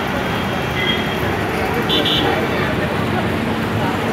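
Steady road-traffic noise with people talking in the background, and a brief high-pitched tone about halfway through.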